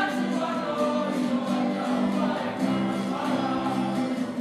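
A large group of men and women singing together in unison, a Māori action song (waiata-ā-ringa), with long held notes and short breaks between phrases.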